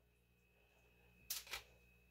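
Near silence, broken about a second and a half in by two quick light clicks close together: a metal fork set down on a foil-lined pan.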